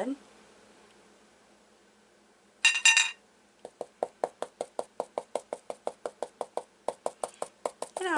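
Stencil brush tapped rapidly against a stencil on a fabric towel, pouncing fabric paint through it: a steady run of sharp taps, about five a second, starting a little past the middle. Just before the tapping there is one brief clatter.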